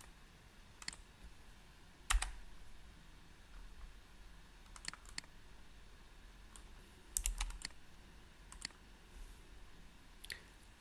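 Scattered clicks of a computer mouse and keyboard: single clicks about one and two seconds in, a pair in the middle, a quick run of three or four just after seven seconds, and a final pair.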